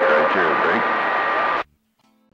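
CB radio on channel 28 receiving a weak, hissy transmission with a steady whistle tone over it. The signal cuts off abruptly about one and a half seconds in, as the transmitting station drops off and the receiver goes quiet.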